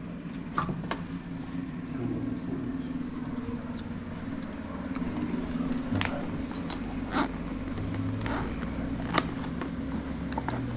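Steady low hum of a running air-handler blower fan, with scattered clicks and knocks from handling.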